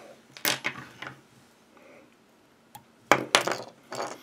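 Light metallic clinks and taps from small fly-tying tools being handled while a whip finish is tied off and the thread trimmed. They come in two short clusters, about half a second in and about three seconds in.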